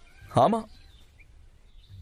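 A single short vocal exclamation, falling in pitch, about a third of a second in, followed by a faint background hush.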